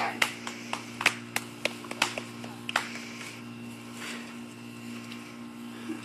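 Scattered handclaps from a small handful of spectators, irregular and thinning out, stopping about halfway through. A steady low hum runs underneath.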